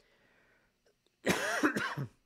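A man coughs into his hand: one harsh cough about a second and a quarter in, lasting under a second, after a moment of near silence.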